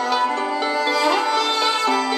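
Classical string music with violin, played by a Horologe HXT-201 pocket FM radio through its small built-in speaker. The sound is thin, with mids and highs but not a lot of low end.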